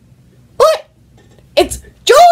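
A teenage boy's voice: two short, high-pitched vocal sounds, one about half a second in and one about a second and a half in, each rising and then falling in pitch.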